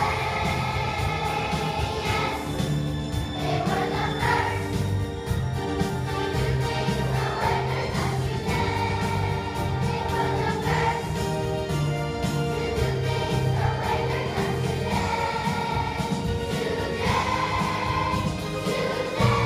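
A large choir of young schoolchildren singing together over an accompaniment with low bass notes and a steady beat.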